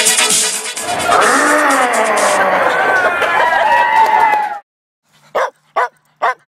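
Music ending, then a few seconds of overlapping voices that cut off suddenly. Near the end come two short dog barks about half a second apart, the bark of a logo sound.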